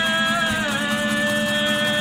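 Acoustic guitar accompanying a voice singing one long held note, which steps down a little in pitch about half a second in.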